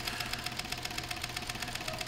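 Industrial sewing machine stitching steadily at speed, a fast, even run of needle strokes over a steady motor hum, as it sews the boxing to a cushion panel that has been pre-basted with seam-stick tape.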